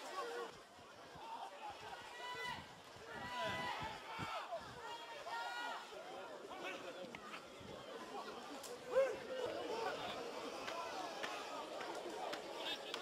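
Faint voices talking and calling in short, broken phrases, with no steady commentary.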